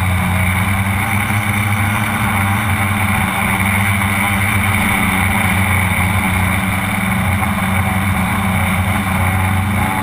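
The tricopter's electric motors and propellers run with a steady buzzing hum, picked up by the camera mounted on the craft itself.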